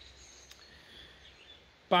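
Quiet outdoor ambience: a low steady rumble with faint birdsong chirping in the distance, and a man's voice cutting in at the very end.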